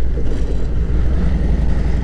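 Harley-Davidson Milwaukee-Eight V-twin engine running steadily at low road speed, a low even drone.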